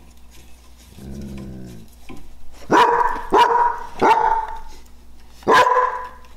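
A dog gives a short low growl about a second in, then barks four times, the barks loud and sharp.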